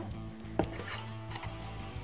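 Background music with steady held chords, and a single light clink of kitchenware about half a second in.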